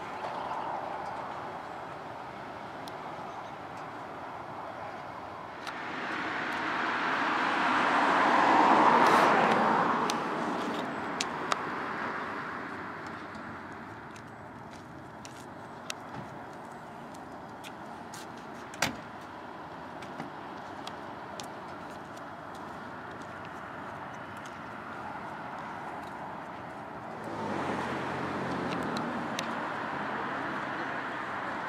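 A car drives past, its sound swelling over a few seconds and then fading away. Later come a few sharp clicks and one louder knock, and near the end another car engine draws near.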